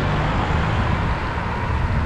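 Steady rumble of wind buffeting the microphone of a camera on a moving bicycle, mixed with road and traffic noise.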